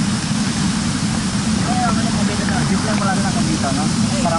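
Loud, steady rush of a waterfall heard from close by, with faint voices in the background.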